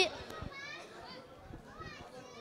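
Faint children's voices and murmur in a large hall, away from the microphone, with a couple of short faint voice sounds. A child's loud amplified voice cuts off right at the start.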